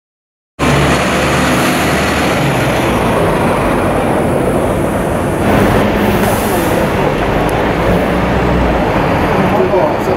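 A large vehicle's engine idling steadily, with the indistinct talk of several people over it; the sound cuts in about half a second in.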